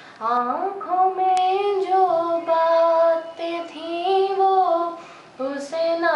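A young woman singing a Hindi song solo, unaccompanied, in long held notes that slide between pitches, with short pauses for breath.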